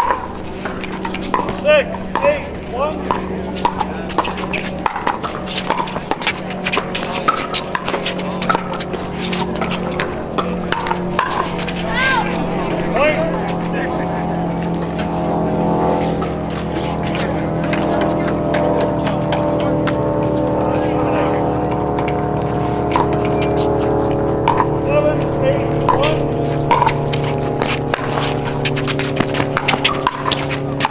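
Pickleball paddles striking plastic balls in sharp pops on several courts, over indistinct voices. About halfway in, a steady hum of several layered tones rises under them.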